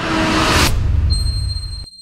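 A sound-effect sting: a rising whoosh over a low rumble cuts off suddenly under a second in. Then a bright, high ding rings on.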